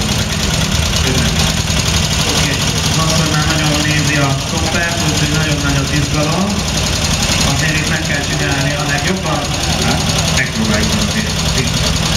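Dnepr sidecar motorcycle's flat-twin (boxer) engine idling steadily, with voices talking over it.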